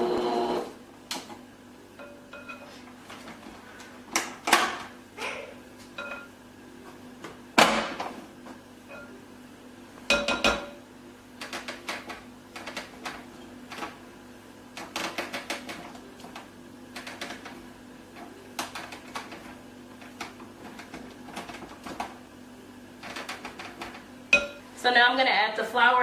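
A stand mixer's motor cuts out about half a second in. Then come scattered clinks, taps and scrapes of a beater and spatula against a glass mixing bowl as the creamed butter and sugar are scraped down, over a faint steady hum.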